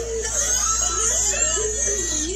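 A person's voice making wordless sounds whose pitch wavers up and down.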